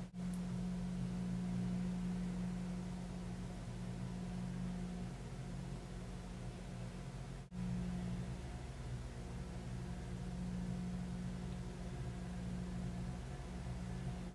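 Steady low hum over faint hiss, the background tone of a quiet room, cut by a very brief dropout about halfway through.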